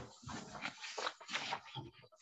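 Sheets of paper rustling and being shuffled in short, irregular bursts.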